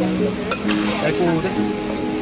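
Meat sizzling in a steel wok over a gas burner while a metal spatula stirs it, scraping and clicking against the pan. A tune of held notes plays over it.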